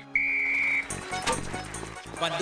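A single short referee's whistle blast, one steady high note lasting under a second, followed by background music.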